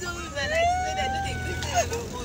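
A voice drawn out in one long, slightly rising high-pitched call amid laughter, over the low hum of a car in motion.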